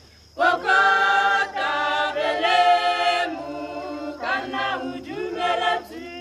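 Choir of women and a few men singing unaccompanied in parts, an African choral song. The full chorus comes in loudly about half a second in, eases to a softer line a little past the middle, then swells again near the end.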